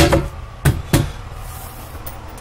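Two sharp knocks about a quarter second apart: a hard Corian sink cover being set down on the countertop.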